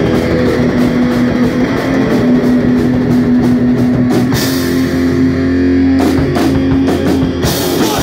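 A live heavy rock band playing loud: distorted electric guitars, bass guitar and drum kit. About four seconds in, the cymbals drop away while the guitars and bass hold a low sustained chord, and the full band comes crashing back in near the end.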